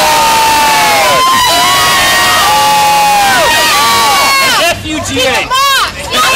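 A small group of people cheering and whooping together in long, loud, held yells that tail off about a second in and again past three seconds, ending in a high shriek near the end.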